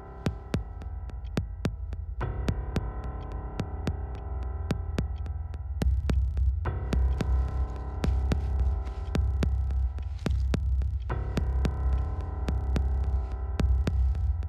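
Tense film background score: a sustained drone with a low throbbing pulse and a steady ticking, about three ticks a second, slowly growing louder.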